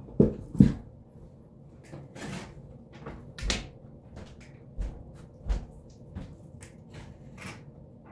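A string of short knocks, thumps and rustles from a person getting up and moving about a room, handling things as she goes. The loudest are two thumps within the first second, with lighter knocks and rustles spread through the rest.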